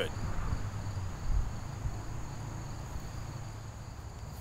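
Crickets chirring steadily as two thin high tones, with a low rumble about a second in.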